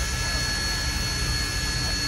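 Steady roar and hiss of the Union Pacific Big Boy No. 4014 steam locomotive heard inside its cab while it stands under steam, with faint steady high whines over it.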